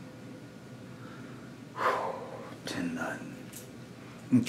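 A person's voice in short breathy, whispered bursts, a sudden loud one about two seconds in and a weaker one near three seconds, over a low steady background hiss.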